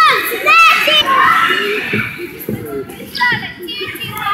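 Children's shouts and chatter in a gymnasium, with two short high-pitched squeals, one about half a second in and one just after three seconds.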